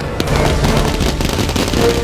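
Fireworks going off in a dense, continuous run of crackles and pops.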